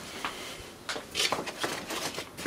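A few short knocks and rustles of objects being handled and moved, a small cluster of them in the second half.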